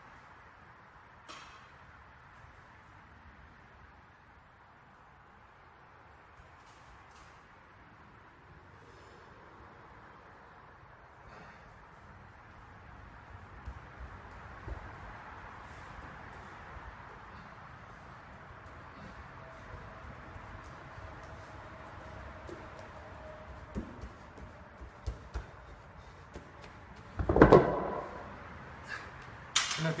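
Loaded strongman yoke carried on spud straps, its plates and frame clinking and knocking with each step as it comes closer, growing louder over the second half. Near the end it is set down with one heavy thud.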